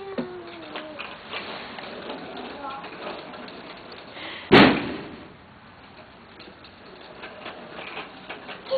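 Faint scattered rattling of a child's bicycle with training wheels rolling over a concrete floor, with one sharp, loud bang about four and a half seconds in. A child's voice is heard briefly at the start.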